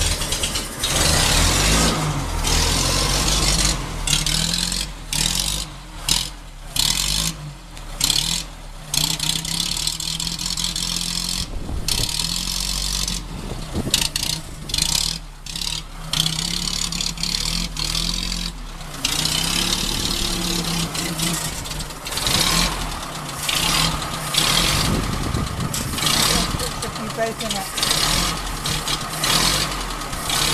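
1924 Bullnose Morris Cowley's four-cylinder engine running at idle, still cold from a cold start, with a steady low hum and brief dips in loudness in the first half.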